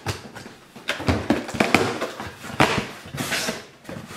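A utility knife slicing the packing tape on a cardboard shipping box, then the cardboard flaps being pulled open: a run of sharp, irregular scrapes and rustles.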